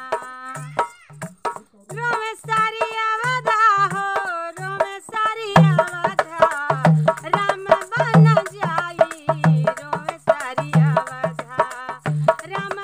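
A woman singing a Hindi devotional bhajan to Ram, accompanying herself on a dholak hand drum played in a steady beat. The drum strokes grow louder about halfway through.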